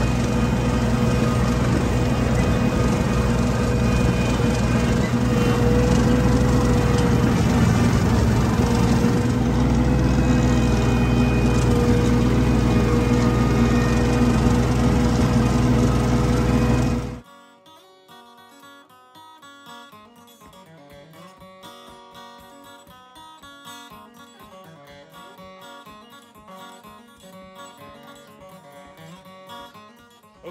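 Tractor engine running steadily under load while mowing a clover field. About two-thirds of the way through it cuts off abruptly, giving way to soft guitar music.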